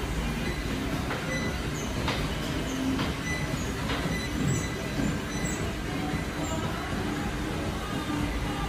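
Steady low mechanical rumble with a faint hum and a few light clicks, like machinery running in a room.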